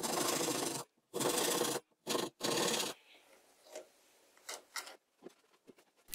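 Hand saw cutting small glue recesses into the edge of a wooden ring held in a vise: four short rasping strokes over the first three seconds, then a few faint clicks.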